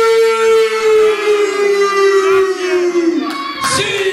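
A man's long, held yell, one loud sustained cry that sinks slowly in pitch over about three seconds, with a short burst of noise near the end.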